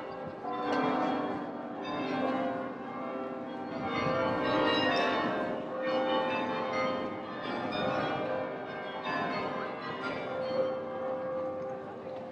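Carillon bells of the Belfry of Bruges playing a melody, each struck note ringing on and overlapping the next.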